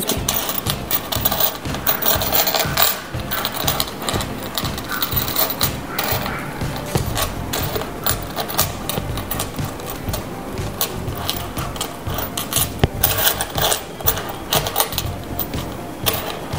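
Links of a light aluminium chain clicking and rattling irregularly as it is handled, lifted and laid on a table, with the soft rustle of cords being pulled through.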